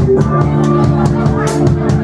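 Live rock band playing: electric guitars and bass hold chords that change just after the start, over a drum kit with quick, regular cymbal strikes and a louder crash about one and a half seconds in.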